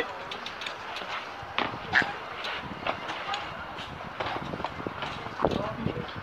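Low background ambience with faint, indistinct voices and a few light knocks.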